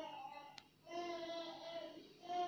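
A high voice singing long, steady held notes, two phrases with a short break between them, in the manner of a devotional chant during prayer.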